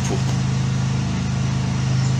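Steady low mechanical hum with a buzzing tone over a background hiss, from a running motor or machine.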